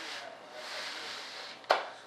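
A hand rubbing over the side of a molded fiberglass model-jet fuselage, a soft steady scraping hiss, followed by a single sharp tap near the end.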